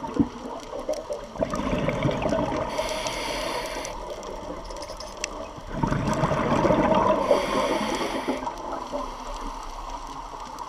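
Scuba diver's breathing through a regulator underwater: two long, bubbling rushes of exhaled air, with a thinner hiss of inhalation between them.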